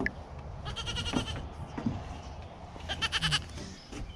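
A goat kid bleating twice, each call a quavering bleat of about half a second, the second about two seconds after the first.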